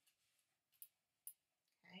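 Near silence: room tone, with two faint short clicks about half a second apart.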